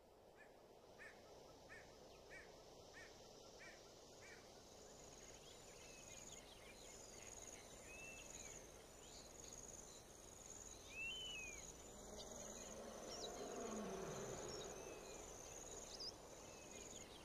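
Faint nature ambience fading in: a steady high chirring of insects with scattered short bird-like calls, opening with a row of evenly spaced chirps. A low rumble swells near the end, with a falling low tone.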